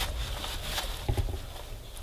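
Soft rustling and scuffing of a puppy's paws shifting in wood-shaving litter in a tray, with a soft bump about a second in.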